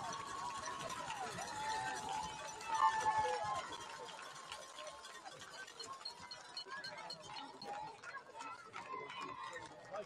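Faint crowd in the stands: many distant voices talking and calling out at once, swelling briefly about three seconds in, then quieter.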